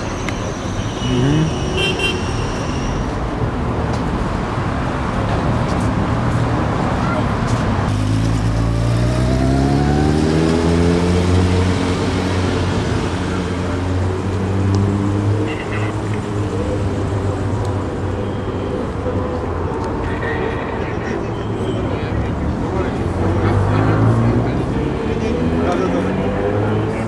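Crowd of people on a city street, voices mixed with the steady noise of car traffic; a low pitched sound, from voices or an engine, holds for several seconds in the middle and again near the end.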